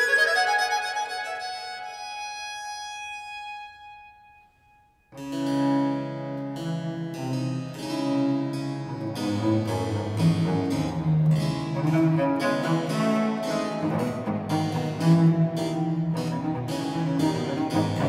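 Early Baroque trio sonata played by a period chamber ensemble: a held chord dies away into a brief pause, then about five seconds in the harpsichord comes in with quick plucked chords over a bowed cello bass line, with the upper instruments joining.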